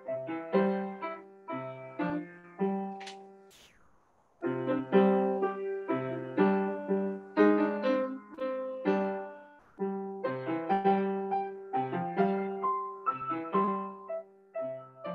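Upright piano played by a student, a repeating pattern of low bass notes under chords. The playing breaks off briefly about four seconds in and then comes back louder.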